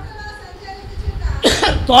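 A man's preaching voice through a microphone: a short pause with only a low rumble of the room, then he resumes speaking loudly about one and a half seconds in.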